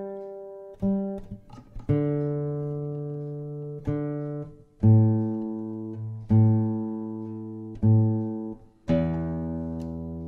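Nylon-string classical guitar being tuned: single strings plucked one at a time, about seven times, each left ringing while the tuning peg is turned, stepping to lower strings and then several strings sounding together near the end to check. The strings have drifted out of tune as the room warmed up.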